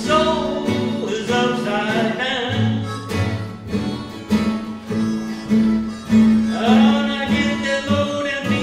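Acoustic Western swing band playing a blues number: upright bass and acoustic guitars, with a lead melody line that slides between notes.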